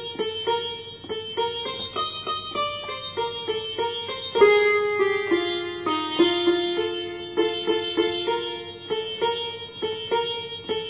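Instrumental music: a melody of plucked notes on a string instrument, several notes a second, each struck sharply and dying away.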